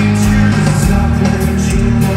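Live hard rock band playing loudly in an arena: electric guitars, bass and drums, with the singer's voice, heard from the crowd through the hall's sound system.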